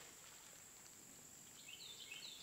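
Near silence: faint outdoor background with a steady high hiss, and a few faint bird chirps near the end.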